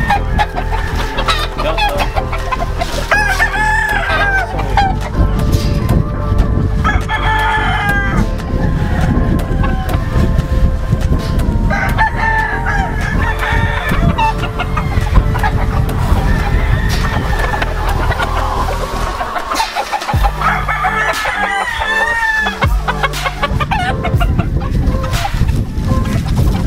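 Gamefowl roosters crowing, several long crows from different birds a few seconds apart.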